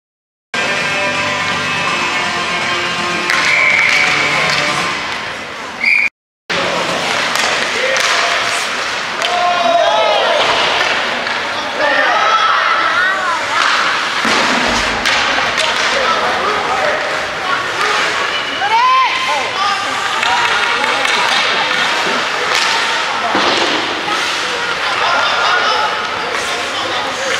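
Youth ice hockey game sound in an indoor rink: scattered shouts and calls from players and spectators over the hall's general noise, with sharp knocks of sticks and puck. It opens with a few seconds of steady music-like tones that cut out briefly.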